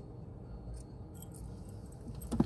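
Low steady rumble of a car cabin, with a few faint clicks and rustles of something being handled about a second in.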